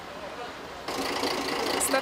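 Faint outdoor background with distant voices, then a sudden jump in level about halfway through to a woman speaking over a steadily idling engine.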